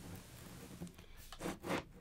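Faint handling noise as two closed aluminium MacBook Pro laptops are picked up and held together: a few brief scrapes and rustles in the second half.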